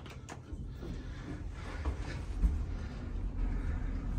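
Hydraulic elevator's sliding cab door closing with a low rumble. A few clicks of the door-close button come at the very start, and there is a low thump about two and a half seconds in.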